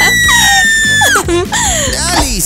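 A girl's long, high-pitched scream of fright that holds one pitch for over a second and sags at the end, followed by shorter cries, over background music.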